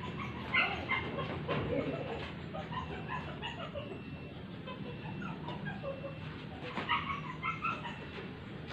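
Short, repeated animal calls in two bouts, one near the start and one near the end, over a steady low background.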